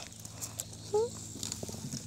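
A soft spoken 'Hmm?' about a second in, over faint rustling of a hand moving through dirt and leaf litter.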